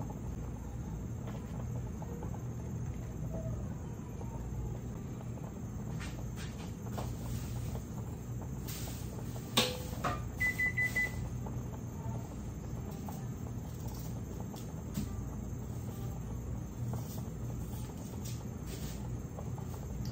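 Kitchen sounds: a steady low hum under scattered clicks and knocks of handling at the sink, with one sharp clack about ten seconds in, then a short high beep.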